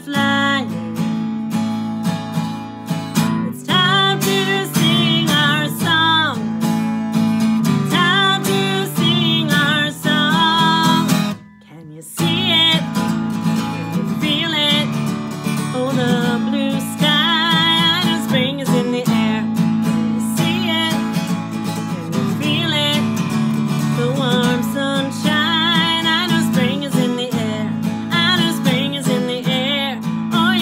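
A woman singing a children's sing-along song while strumming an acoustic guitar, with a brief break in the music about eleven seconds in.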